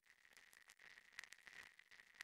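Near silence, with a faint high steady tone and faint scattered ticks.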